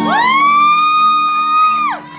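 A woman's voice singing one long, high held note into a microphone, sliding up into it at the start and falling away near the end, over steady low sustained accompaniment.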